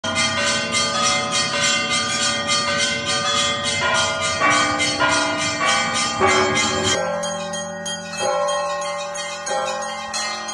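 Church bells ringing: several bells of different pitch struck in a fast, rhythmic peal, about three strikes a second. About seven seconds in it changes to slower single strikes on deeper bells, each left to ring on.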